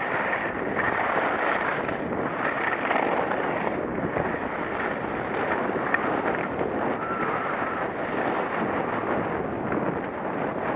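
Steady rush of wind on a helmet-mounted action camera's microphone, mixed with skis sliding and scraping over groomed snow during a downhill run.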